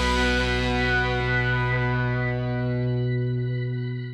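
The final chord of a rock song, held on distorted electric guitar, ringing out and slowly fading, then dying away at the very end.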